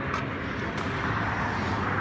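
Steady rushing noise of road traffic on the highway, with a faint low engine hum in the second half.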